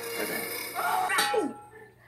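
Animated-film soundtrack of music and metallic sound effects, with a sharp hit just over a second in and a short falling tone after it, then dying away toward the end.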